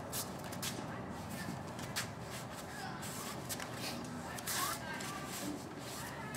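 Bare feet sliding and stepping on rubber floor mats, with cloth rustling as the practitioner moves, heard as a string of short brushing sounds over a steady background hiss.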